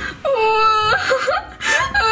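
A small child's voice crying in two long wailing cries, the second starting near the end: pretend crying voiced for doll play.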